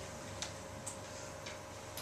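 Quiet room tone with a steady faint hum and a few soft ticks about every half second.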